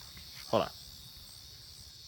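A steady, continuous high-pitched chorus of crickets chirping in the evening.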